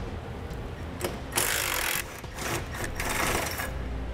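Cordless impact wrench hammering in two short bursts about a second apart as it backs out the bolts holding the tow bracket to the frame rail.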